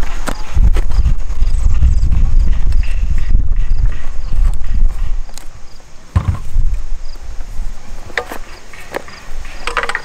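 Metal climbing sticks and tree stand knocking and clicking as they are handled and strapped together with bungee cords, with one heavier thump about six seconds in. A low rumble of wind on the microphone runs through the first half.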